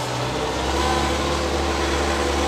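LOVOL 1054 tractor's diesel engine running, heard inside the cab; about half a second in its note drops lower as the tractor is put into reverse, then it runs steadily.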